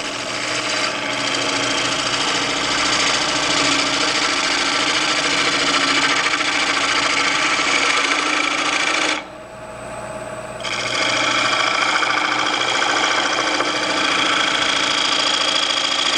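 A spindle gouge cutting a tenon on a rough-turned bowl blank spinning on a wood lathe at 850 RPM: a steady cutting hiss over the lathe's hum. It breaks off for about a second and a half a little past halfway, then resumes with a higher ring.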